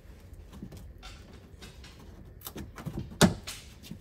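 A plastic headliner clip snapping out of its oval mounting hole in a Mercedes Sprinter van's body: a sharp snap a little over three seconds in, after a few faint clicks and rubbing sounds as the panel is worked loose.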